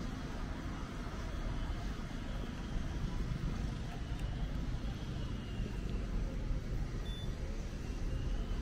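Steady city street ambience: the low hum of road traffic, with no single event standing out.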